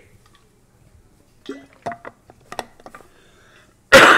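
A man coughs once, sharply and loudly, right at the end, after a couple of seconds of faint clicks and small noises.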